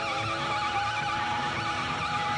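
A live rock band playing, its lead line a high note held with a fast, wide vibrato over sustained guitar chords.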